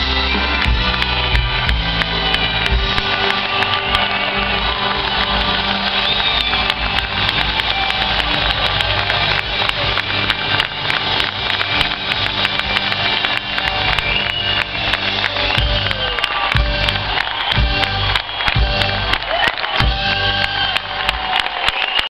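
Live rock band with electric guitar playing, recorded through an overloaded phone microphone in the audience: loud and distorted, with constant crackling over the music.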